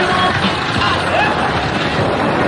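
Diesel engines of a column of farm tractors running on the move, making a dense, steady noise.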